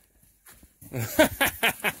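A man laughing in a quick run of short bursts, starting about a second in after a near-silent pause.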